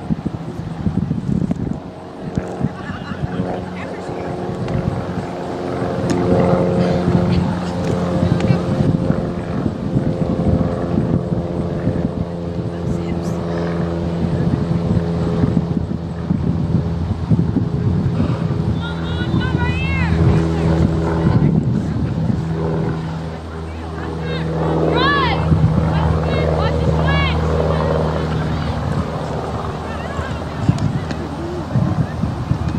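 A steady engine drone with several held low tones that swells and fades slightly, over the open-air noise of a soccer field. Short distant shouted calls come through twice, past the middle and near the end.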